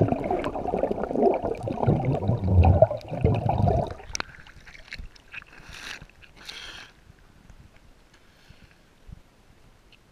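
Muffled bubbling and rushing of a swimmer exhaling underwater, heard with the camera submerged. About four seconds in, the camera breaks the surface and the sound drops away. Then come two short bursts of bubbling as he blows out at the waterline, and faint water lapping.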